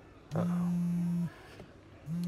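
Outgoing call tone from a smartphone on speaker: one steady, low beep about a second long, part of an on-off pattern while the call fails to connect.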